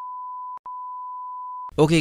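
Steady single-pitch test tone that goes with a TV colour-bar test pattern, broken once by a brief gap with clicks just after half a second in, and cutting off near the end.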